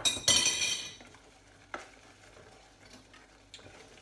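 A spoon knocks against a saucepan and scrapes through risotto in the pan for about a second, then goes quieter, with a couple of faint clicks.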